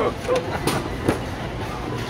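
Busy supermarket background: faint voices over a steady low rumble, with two sharp clicks in the middle.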